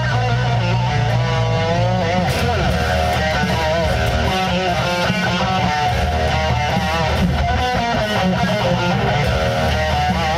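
Electric guitar playing a neo-classical metal lead line, with wide vibrato on its held notes, over a band backing with steady bass notes.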